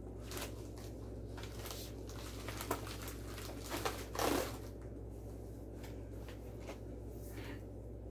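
Plastic bag and paper wrapping rustling and crinkling as a gift is unwrapped by hand, with scattered soft clicks and a louder rustle about four seconds in, over a steady low hum.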